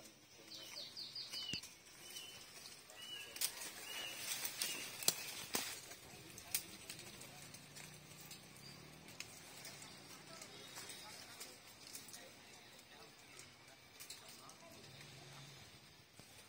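A tree climber's spurs and boots knocking against the trunk of a tall dầu tree as he climbs, a few sharp knocks spread over the first seven seconds, the loudest about five seconds in. Small birds chirp during the first few seconds.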